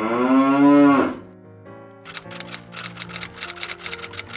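A cow moos once: one loud call that rises and then falls in pitch, lasting about a second. From about two seconds in comes a fast run of sharp clicks, roughly seven a second, over soft held music notes.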